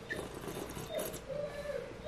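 Faint sipping of red wine from a stemmed glass, with small wet mouth clicks.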